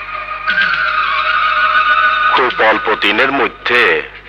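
Background film score of held, sustained chords that shift up to a higher chord about half a second in, followed from about two seconds in by a man speaking in Bengali.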